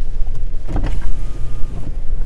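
Low, steady rumble inside a car's cabin as it drives slowly over a snowy lot, with a short, louder burst a little under a second in.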